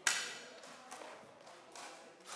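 A single sharp knock right at the start, ringing briefly in a large hall, followed by two faint taps.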